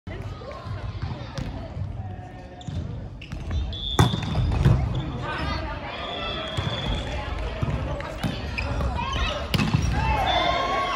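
A volleyball being struck during a rally on an indoor court: several sharp slaps of hands or arms on the ball, the loudest about four seconds in, again shortly after, and near the end. Players' voices call out between the hits.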